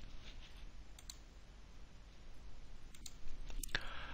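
A few computer mouse clicks over faint room hiss.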